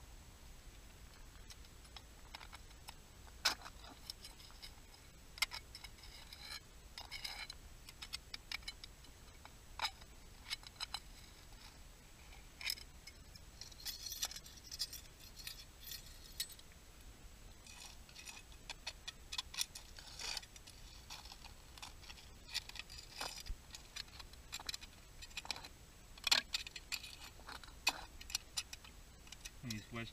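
Faint, irregular clicking and crackling. A few sharper ticks stand out, and there are denser patches of fine crackle about halfway through and again a few seconds later.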